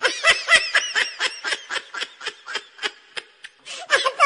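A baby laughing in a quick string of short, high-pitched bursts, about four a second, loudest at first, fading through the middle and picking up again near the end.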